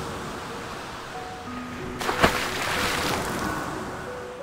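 Ocean surf with a few sparse held music notes over it. A single sharp bang comes a little past halfway.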